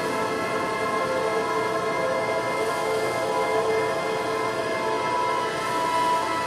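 Electronic synthesizer music: a steady, dense drone of many held tones over a hissing noise bed, without a beat.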